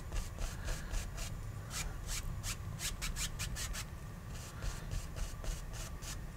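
Paintbrush bristles rubbing across oil paint on a stretched canvas in a quick series of short back-and-forth strokes, blending the water of a lake.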